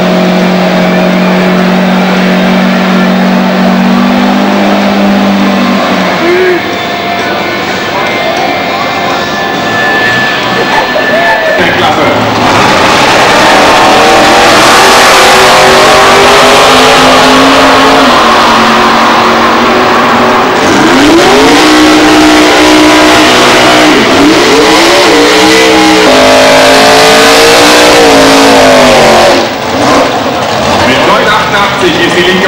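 A car engine held at steady high revs during a burnout, tyres smoking, for the first few seconds. After a quieter spell, drag racing cars run at full throttle down the strip, with engines revving up and down in a burnout near the end.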